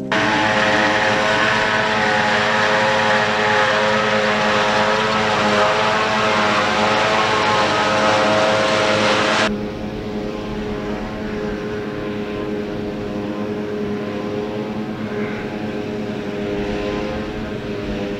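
John Deere 6750 self-propelled forage harvester and tractor running steadily while chopping and loading grass silage, an even machine drone with a whine in it. About nine and a half seconds in it drops suddenly to a quieter, more distant steady running of the same machinery.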